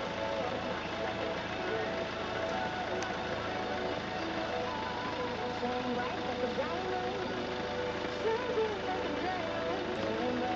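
Muffled, indistinct voice-like sounds with wavering pitch over a steady low hum.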